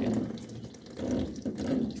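Water trickling at a washing machine's water inlet as its clogged mesh filter screen is pulled out, in two spells, the second starting about a second in. A steady low hum runs underneath.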